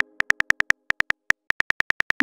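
Keyboard key-click sound effects of a texting app, about fifteen short, high ticking clicks in quick runs with brief pauses, as a message is typed out letter by letter.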